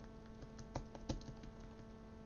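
Computer keyboard being typed on: a quick run of faint key clicks, loudest about a second in, over a steady electrical hum.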